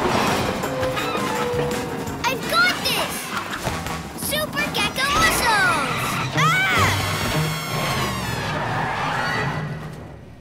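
Cartoon action soundtrack: music under crash and impact sound effects, with short wordless shouts that glide in pitch around the middle. The sound fades down near the end.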